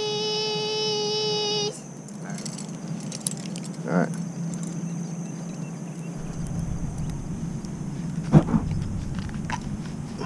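A child's voice holding a long, steady "cheese" for a photo, cutting off after about two seconds. A short sound follows about four seconds in, then a sharp knock about eight seconds in, the loudest moment, over faint outdoor background with a thin high steady tone.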